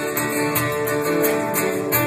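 Instrumental passage of Latin American folk music on several acoustic guitars, strummed and picked, over a steady beat of about three strokes a second.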